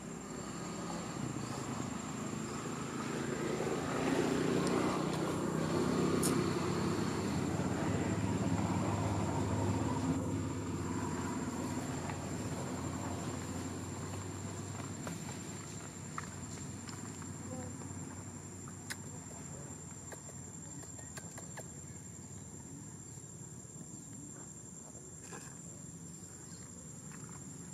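Outdoor ambience: a low rumble swells over the first few seconds and fades away through the middle, under a steady high-pitched insect drone.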